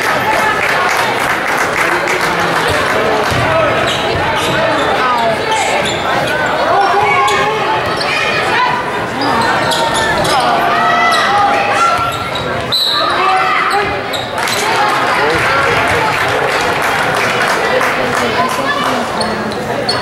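Basketball game in a gym: a ball bouncing on the hardwood court, with indistinct voices of spectators and players in the hall throughout.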